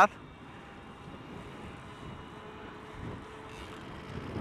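Steady muffled wind and tyre noise while riding a bicycle on a paved path, picked up by a wireless clip-on microphone hidden in a cap under a furry windscreen.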